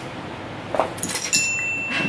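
Plastic bead necklaces clinking and rattling as they are handled and slipped on over the head. About halfway through, a thin, steady high ringing tone starts and holds.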